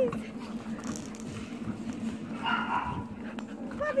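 Dogs at play with a brief dog whine about two and a half seconds in, over a steady low hum.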